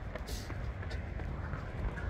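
Steady low rumble of wind on the microphone of a camera carried on a run, with a short hiss about a third of a second in.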